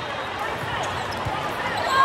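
Volleyballs bouncing on the hard court floor, a few scattered thumps, over the echoing chatter of many voices in a large hall.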